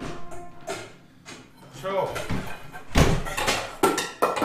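People talking quietly in a room, with a few sharp knocks and a loud thump about three seconds in.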